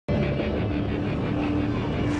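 Loud, steady rumble of a heavy military vehicle's engine, cutting in abruptly at the start.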